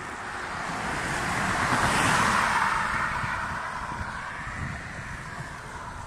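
A car driving past on the road, its tyre noise rising to its loudest about two seconds in and then fading away, with wind buffeting the microphone.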